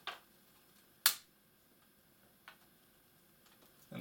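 A few sharp clicks from a laptop's bottom cover being worked loose by hand; the loudest comes about a second in, with fainter ticks near the end.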